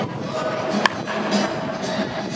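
Background music, with one sharp crack of a wooden baseball bat hitting a batting-practice pitch a little under a second in.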